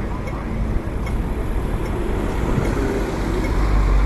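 Road traffic on a busy city street: buses and cars passing close by, with a low engine rumble that grows louder near the end.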